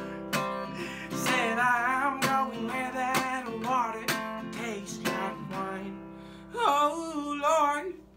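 Small acoustic guitar strummed in a blues, with a man's voice singing long, wavering wordless notes over it about a second in and again near the end.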